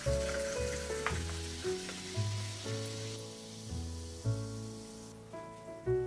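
Soda water being poured into a glass and fizzing, a fine hiss that fades out about halfway through. Background music with steady notes and a bass line plays throughout.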